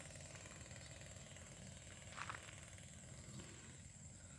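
Faint open-air ambience: a low, uneven rumble and a thin steady high tone, with one short high-pitched sound about two seconds in.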